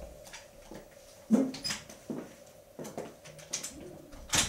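A door being handled as people move about a small room: a sharp knock about a second in, then scattered clicks and short squeaks, over a faint steady hum.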